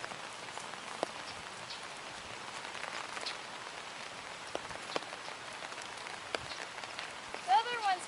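Steady light rain, an even hiss with scattered sharp ticks of individual drops. A voice starts speaking near the end.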